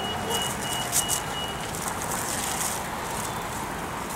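City street traffic noise, steady throughout, with a rapid high electronic beeping, about three beeps a second, that stops before halfway.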